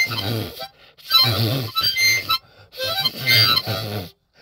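Harmonica playing in a lo-fi blues song, in three short phrases with brief gaps between them, over a low accompaniment.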